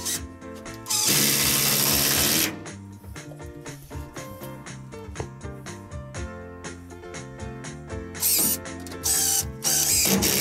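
Cordless drill-driver driving screws into a timber batten: one long run of about a second and a half about a second in, then two short bursts near the end, over background music.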